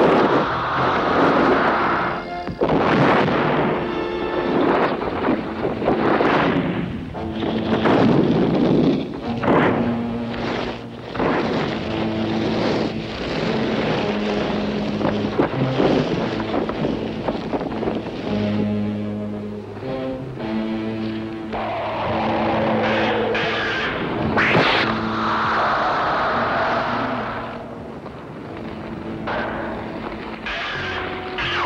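Monster-movie soundtrack: score music with booming sound effects and several sudden impacts.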